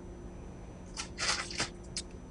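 Kitchen handling noise: after a quiet start, a short rustling and scraping about a second in as flour is scooped from a plastic bag and poured into a blender jar, ending in a small click.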